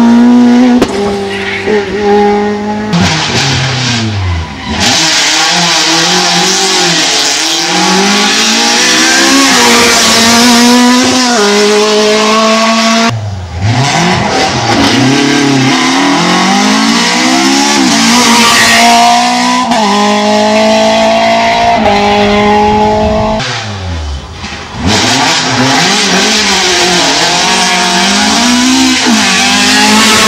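Rally car engines revving hard at full throttle, pitch climbing and dropping through gear changes as the cars come by one after another. The pitch falls sharply as a car passes about 4, 13 and 24 seconds in, with a steady hiss of tyre and road noise.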